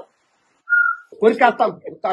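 A single short whistled note, steady in pitch and lasting about a third of a second, just under a second in; a man's voice follows.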